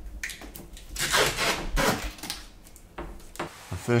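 Red tape being pulled off the roll and wrapped around a white PVC pipe: short rasping tears about a second in and again around the middle, with small clicks and knocks of handling.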